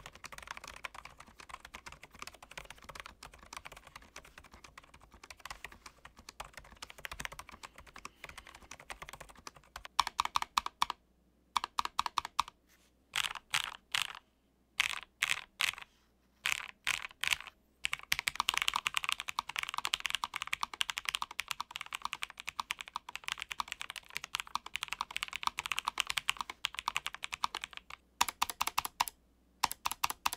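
Typing on a Hexgears Immersion A3 low-profile mechanical keyboard with Kailh switches. It starts as quieter steady typing on the silent linear switches, then about ten seconds in turns louder, in short runs with pauses and then a long continuous run, on the tactile Black Cloud switches. Near the end it changes to the clicky Hide Mountain switches.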